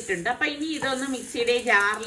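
A woman's voice narrating, with a faint steady hiss behind it.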